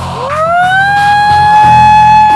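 A woman's long howl through cupped hands, a Bigfoot call: it glides up in pitch over about the first second, then holds one steady note. Background music plays underneath.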